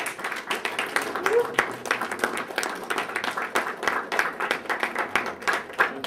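A small audience applauding, dense irregular clapping throughout, with a brief rising voice about a second in.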